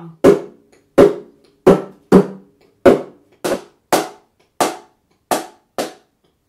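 A wooden hand drum struck by hand in a steady beat: about ten single strokes, each a short hit with a brief pitched ring, roughly one and a half a second.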